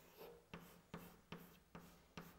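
A stick of chalk writing on a chalkboard: faint, short taps and scratches of the chalk as letters are written, about two to three strokes a second.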